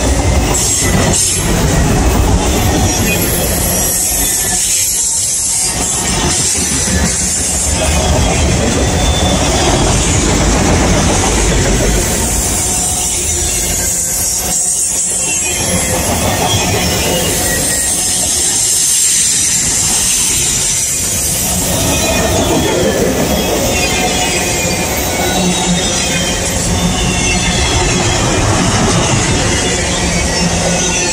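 A long freight train of enclosed autorack cars passing close by: a loud, steady rumble and clatter of steel wheels on the rails, with high wheel squeal at times.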